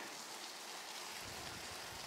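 Steady hiss of a Carrera Fury mountain bike's tyres rolling on a wet, muddy lane, with a low wind rumble on the microphone starting just over a second in.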